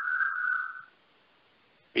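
A single steady high whistle-like tone, lasting under a second, then a dead drop-out of about a second with no sound at all.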